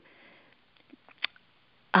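A pause in speech heard over a telephone line: a faint intake of breath, a few small mouth ticks, and one short click about a second and a quarter in. Speech starts again at the very end.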